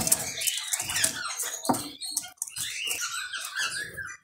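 Short squeaky chirps and twitters from a caged European goldfinch and canary, with wing flutter and a sharp click about one and a half seconds in.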